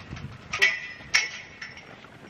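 Two sharp metallic clinks about half a second apart, each ringing briefly, over faint outdoor background noise.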